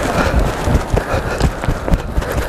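Footsteps on a roof, heard as irregular low thumps, under a steady rushing noise of wind on the microphone.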